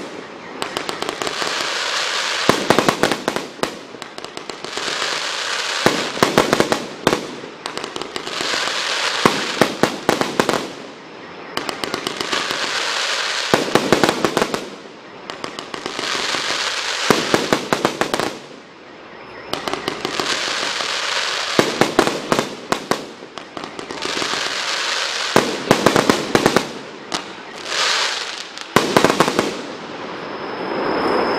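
A 100-shot fireworks cake firing a long run of mine and crackling-star shots. Clusters of sharp crackling pops come about every two to three seconds, with a noisy rush between them.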